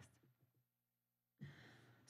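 Near silence, with a faint intake of breath by a person about one and a half seconds in.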